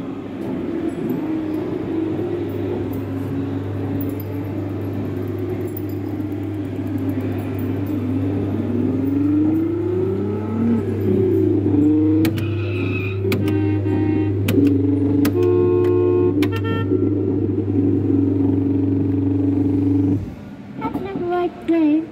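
Coin-operated kiddie car ride running its electronic car sound effects: a steady engine-like hum with a rising and falling whine, then a run of beeping tones as the dashboard buttons are pressed. The sound cuts off suddenly near the end as the ride cycle finishes.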